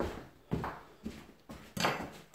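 Footsteps approaching, about two a second, then near the end a louder knock as a Böker Field Butcher knife is set down on a wooden chopping board.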